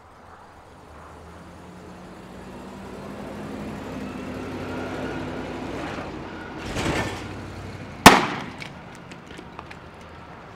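A motorhome's engine grows louder as it drives past, with a short louder surge about seven seconds in. Just after, a single loud, sharp bang rings out briefly.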